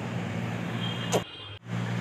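Steady low background hum with a faint hiss, broken by a short click and a brief gap about a second and a half in.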